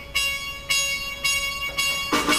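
Solo trumpet playing a short phrase of about four held notes, each lasting roughly half a second, with the rest of the big band almost silent behind it.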